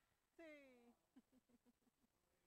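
Near silence broken by a faint call about half a second long that falls in pitch, followed by a few short faint sounds.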